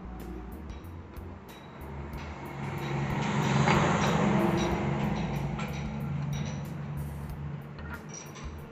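A motor vehicle passing by: its engine and road noise swell to a peak about four seconds in, then fade, over a steady low hum and background music.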